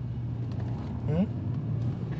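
Steady low drone of a car's engine and road noise heard from inside the cabin while driving.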